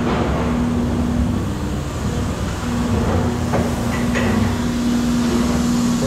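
Factory machinery in a bucket-making plant running: a loud, steady rumble with a steady hum on top that drops out for about a second and comes back, and a couple of faint knocks near the middle.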